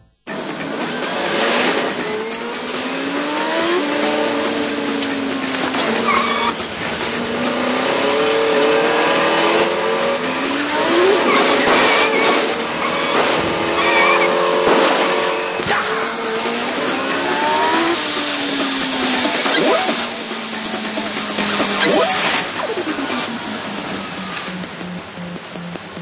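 Racing video game sound: car engines revving up and down in pitch, with tyre squeals and skids, over music. A high falling whistle sounds near the end.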